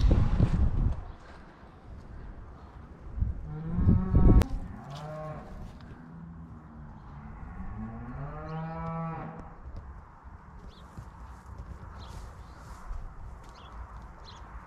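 Freshly calved cows mooing: a loud call about four seconds in, then a longer call from about seven seconds in whose pitch dips and then rises.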